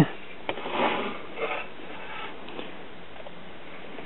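Faint handling noise over a steady low hiss: a soft click about half a second in, then a few brief rustles.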